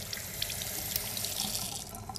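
Water running from a single-lever chrome tap into a basin and splashing over hands being washed, a steady rush that falls away as the tap is shut off at the end.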